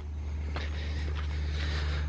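A low, steady rumble that grows a little louder in the first half second, then holds.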